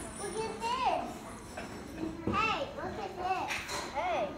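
Children's voices in the background: high-pitched talking and exclamations that rise and fall, loudest about a second in and again around two and a half seconds.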